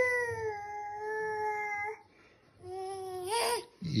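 A toddler's voice: one long, held 'aah' at a steady high pitch lasting about two seconds, then after a short pause a second, shorter call that rises in pitch at its end.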